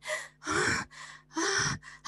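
A woman's voice giving three breathy, strained grunts of effort, the sound of someone straining to push or cut through something that won't give.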